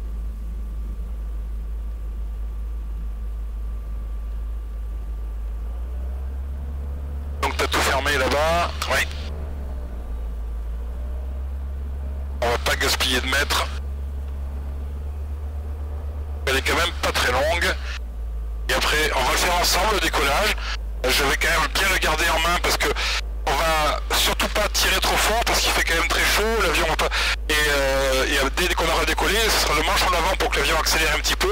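Voices over the aircraft's headset and radio audio: short transmissions early on, then almost continuous talk from about two-thirds of the way in. A steady low drone runs underneath.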